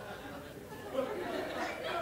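Faint murmur of a comedy-club audience during a silent pause, with scattered quiet voices.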